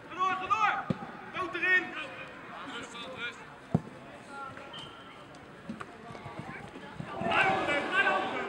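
Football players shouting on the pitch, with the thud of a football being kicked just before a second in and a sharper, louder kick near four seconds; the shouting swells again near the end.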